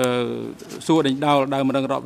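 Speech only: a man speaking Khmer, opening on a long held vowel.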